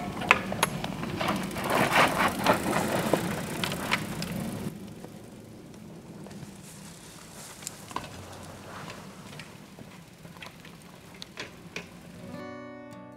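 BMX bikes being moved and handled on a dirt track, with tyres and feet crunching on dry dirt and a run of clicks and knocks. It goes quieter about five seconds in, leaving only occasional clicks.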